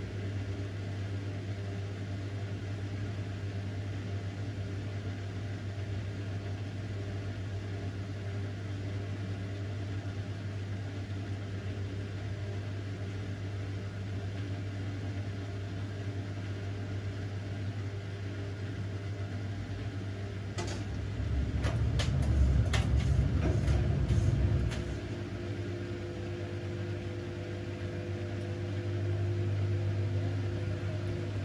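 Bosch front-loading washing machine on its wool cycle, its motor turning the drum slowly with a steady low hum while a single wet jumper tumbles: the slow load-distribution turning before a spin. About two-thirds in come a few knocks and a louder rumble for a few seconds, after which a higher steady tone joins the hum.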